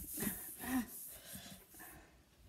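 Two short, faint vocal noises from a person, grunts or murmurs rather than words, over a steady rustling hiss.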